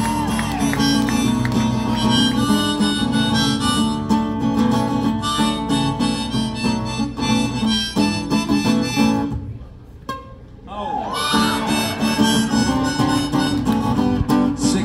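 Strummed acoustic guitar with harmonica played over it, the instrumental opening of a song. About two-thirds of the way in, the playing breaks off for about a second, then guitar and harmonica come back in.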